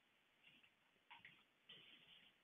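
Near silence with a few faint ticks from a computer mouse wheel scrolling a menu.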